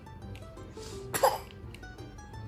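Background music, with one short, sharp cough a little over a second in.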